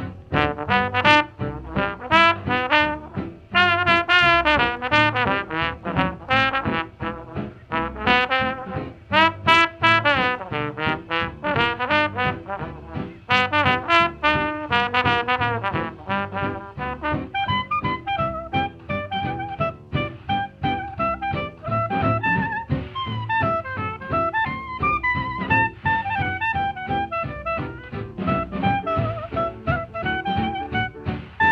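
Instrumental brass-band music in a jazzy ragtime style, with no singing. The horns play long, wavering notes through the first half, then give way to busier, shorter notes.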